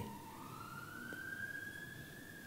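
A faint, single high tone that slides slowly in pitch, like a siren wail: it dips a little at first, then rises over about a second and a half and holds, over a low background hiss.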